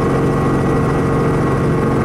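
A four-seat helicopter's engine and main rotor running steadily, heard from inside the cabin.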